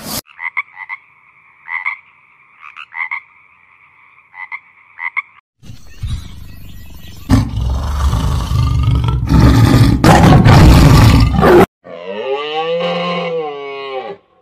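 A run of animal calls. First comes a steady, high two-toned call broken by repeated pulses for about five seconds. Then a tiger roars, loud and rough, for about six seconds, and near the end a cow moos, rising and then falling in pitch.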